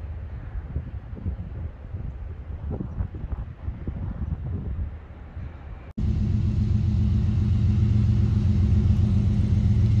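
Wind rumbling on the microphone. After a cut about six seconds in, a louder, steady diesel drone with a deep hum: the engine of the approaching freight locomotive.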